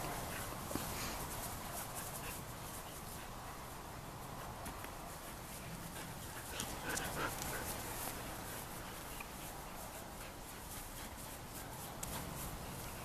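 Two poodle puppies play-fighting over a toy: faint dog noises and scuffling over a steady outdoor background, a little louder about seven seconds in.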